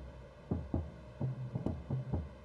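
Percussion loop of deep, booming drum hits, about six strikes in an uneven, syncopated pattern, each with a short low ring.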